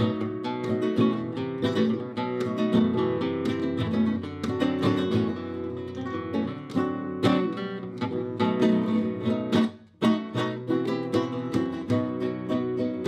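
Solo flamenco guitar on a nylon-string Spanish guitar: a fast run of plucked notes and chords, with a brief break about ten seconds in.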